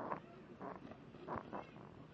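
An infant making a few short, soft grunting and squeaking sounds.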